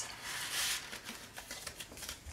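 A card sliding into a paper envelope: a soft rustle of paper against paper, strongest from about a quarter to about one second in, followed by light paper handling.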